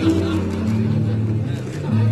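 Music of steady held chords, the low notes moving in steps about every half second.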